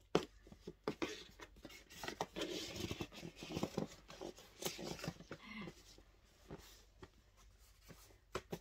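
Ribbon rustling and sliding over a cardboard gift box as it is pulled loose, with irregular scrapes and soft taps from handling the box.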